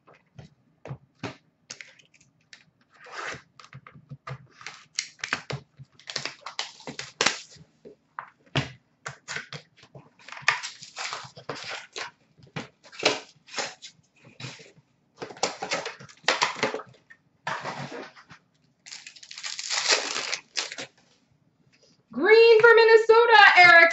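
Foil wrappers of Upper Deck hockey card packs crinkling and tearing open, with cards being shuffled, in quick irregular crackles and rustles.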